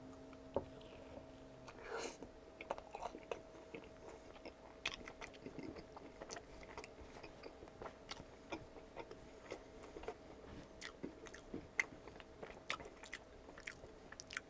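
Close-up sounds of a person biting into and chewing a sauce-coated fried chicken tender, with many small, sharp, wet mouth clicks and crunches scattered through the chewing.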